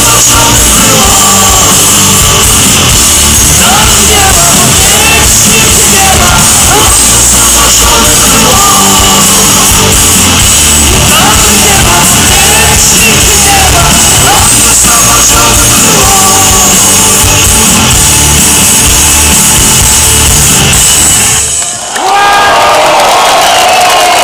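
Rock band playing loudly live, with drums, guitar and at times a man singing, heard from within the crowd. The music breaks off suddenly about 21 seconds in, and the crowd's shouting and voices follow.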